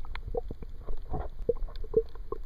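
Water noise heard through a submerged camera: a muffled low rumble with irregular small pops and clicks, several a second, and a brief rushing noise about a second in.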